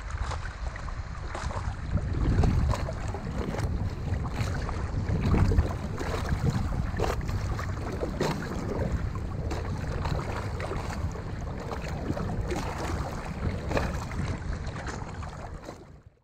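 Sea water sloshing and splashing around a camera held at the water's surface, with scattered droplet clicks and a low wind rumble on the microphone, swelling twice early on and fading out at the end.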